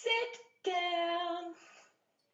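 A high-pitched voice singing a short phrase: a brief note falling in pitch, then one long note held steady for nearly a second.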